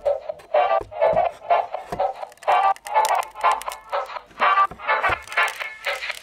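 Background music: a melody of short, evenly repeated notes.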